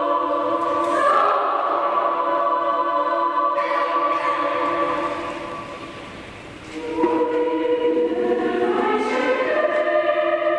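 Background music: a choir singing long held chords. The sound fades away about halfway through, and a new phrase swells in about seven seconds in.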